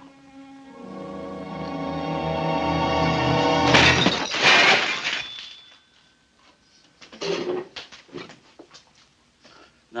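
Held music tones swelling steadily louder, then a loud crash of dishes smashing at about four seconds in, followed by a few smaller clatters.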